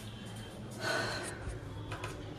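A short gasp of breath about a second in, over quiet room tone.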